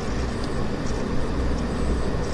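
Steady low hum under an even hiss of background noise.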